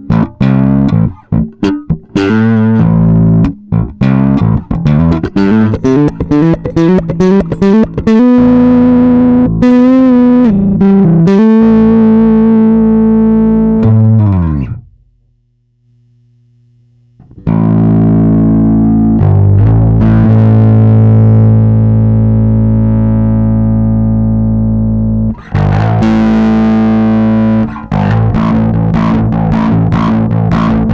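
Electric bass guitar played through a 12AY7 tube overdrive pedal, the Crazy Tube Circuits Locomotive, with a distorted tone: a run of quick picked notes, then held notes that fade out. After a pause of about two seconds midway, a long held note rings, followed by fast picked notes again near the end.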